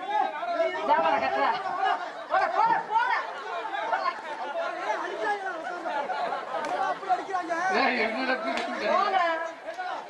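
Speech only: stage actors' voices talking, with voices overlapping at times.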